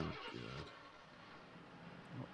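Faint car engine and road noise from a film soundtrack, low and steady, following a brief voice sound at the very start.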